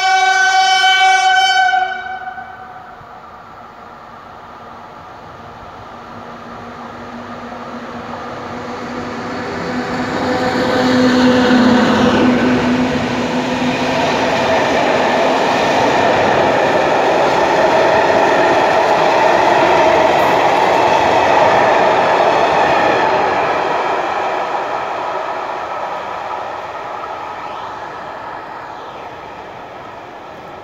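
A train horn sounds until about two seconds in. Then an EU07 electric locomotive and its passenger coaches approach and pass close by: the locomotive goes by about twelve seconds in, and the coaches roll past on the rails before the sound fades as the train moves away.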